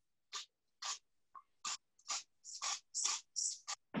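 Hand-pump spray bottle spritzing, about a dozen short hisses a third to half a second apart, coming quicker in the second half.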